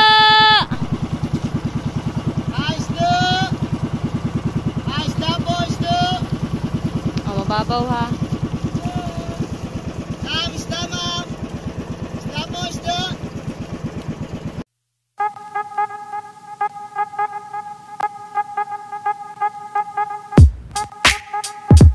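Motorized outrigger boat's engine running steadily with a quick, even putter, a loud held horn-like tone at the very start and voices breaking in briefly now and then. About fifteen seconds in, the engine sound cuts off abruptly and steady music with a hum follows.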